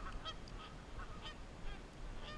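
Faint, scattered short honks of geese in the distance, several brief calls over a quiet background.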